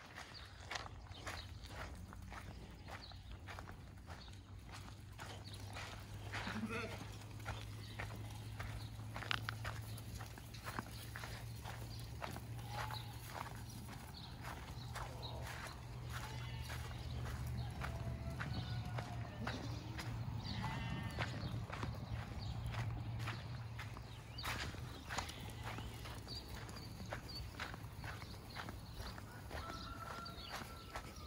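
A flock of sheep on the move, with a few sheep bleating in the middle stretch among many small hoof and footstep clicks on dirt, over a steady low rumble.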